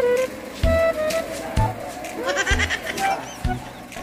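Background music with a steady beat about once a second and plucked notes. About two seconds in, a brief wavering high-pitched vocal sound, like a bleat, joins the music.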